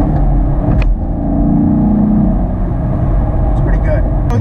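Chevrolet Camaro SS 1LE's 6.2-litre V8 running steadily under way, heard from inside the cabin, with a short click just under a second in.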